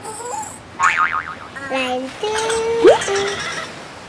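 Cartoon sound effects with a squeaky character voice: a wavering high-pitched vocal about a second in, then a few held tones and a quick upward-gliding effect near the end.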